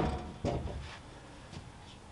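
Cedar cant knocking against the steel bed of a Wood-Mizer LT35 portable sawmill as it is stood on edge and positioned by hand. A heavy thump is dying away at the start, a smaller knock comes about half a second in, and there is a faint tick later.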